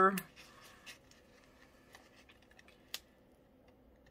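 Faint scratching of metal tweezers picking a sticker off its paper backing sheet, with one sharp tick about three seconds in.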